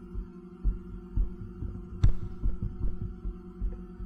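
Steady low electrical hum with irregular soft low thumps, as of knocks or handling picked up by a desk microphone, and one sharp click about two seconds in.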